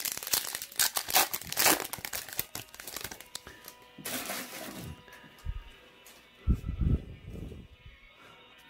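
Crinkly foil wrapper of a trading-card pack being torn open by hand, a rapid crackle over the first few seconds, followed by rustling and handling of the wrapper and cards.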